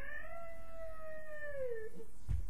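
A single long, drawn-out meow-like cry that rises at the start, holds steady, then falls away in pitch near the end.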